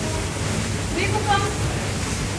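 Steady rushing background noise of an aquarium hall, with a brief distant voice about a second in.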